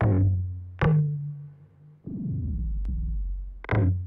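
A looped recording of toms playing back through Ableton Live's Tones warp mode with a coarse grain size, which gives the drums a grainy, pitched ring. Hits land at the start, just under a second in and near the end, and between them a low tone slides downward.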